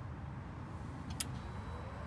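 A single sharp click about a second in, over a steady low rumble. Near the end a faint rising hum starts as the Mighty Mule dual gate opener begins to run after being switched on remotely.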